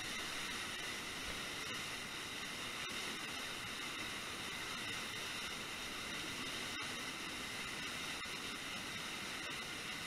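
Steady rush of a waterfall pouring into a churning whitewater pool.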